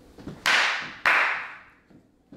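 Two loud, sharp hand slaps about half a second apart, each trailing off over about half a second.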